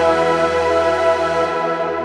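Vengeance Avenger software synthesizer playing a bell preset: a held chord of steady, bright pitched tones over a low bass note, which breaks off for a moment past halfway and comes back.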